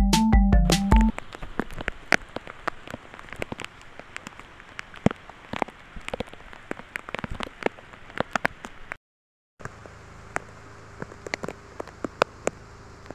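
Rain falling, with many scattered sharp drops striking close by, after an electronic music jingle ends about a second in. A brief silent break comes about nine seconds in, then more rain and drips over a faint steady hum.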